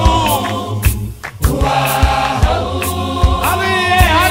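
South African clap-and-tap gospel choir singing in harmony over a steady beat and bass line. The music briefly thins out about a second in, then comes back in full.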